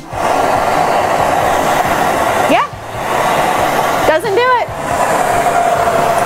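Hand-held propane torch flame with magnesium powder blown through a tube into it: two long, loud rushes of air, broken by a short pause about halfway, with a brief rising squeak and a warbling tone in the second half. The magnesium powder does not catch fire.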